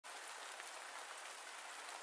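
Light rain falling, a faint steady hiss of drops.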